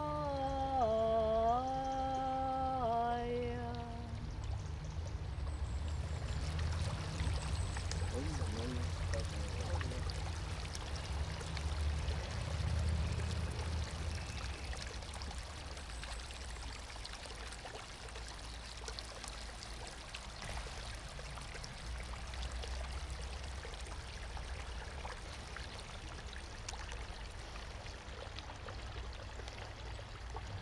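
A few held melodic notes, stepping down and back up in pitch, end about four seconds in. Then comes a steady trickle of running water over a low rumble.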